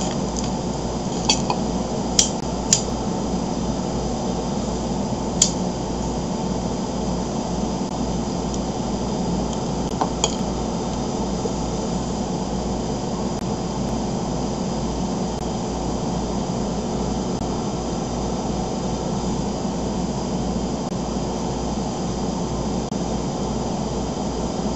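Small puffs and lip pops of a man drawing on a tobacco pipe: a handful of short clicks in the first ten seconds, over a steady room hum and hiss.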